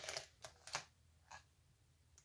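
Plastic card-sleeve binder page rustling and crinkling as it is turned over on the rings, with a few short crackles in the first second and a half.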